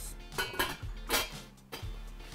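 A few light metallic clinks as a stainless steel Turkish double teapot is handled, with background music underneath.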